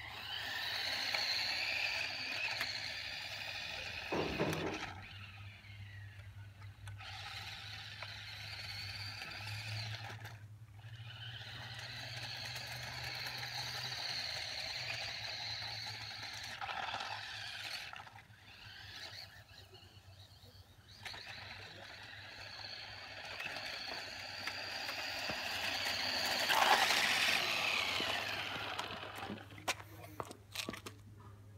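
Radio-controlled toy car's motor and gears whining as it is driven, rising and falling with the throttle and dropping out briefly a few times; the whine is loudest and falls in pitch near the end.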